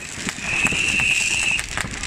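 A firecracker strip going off on the road in a rapid, irregular string of small cracks. A steady high whistle sounds over it for about a second in the middle.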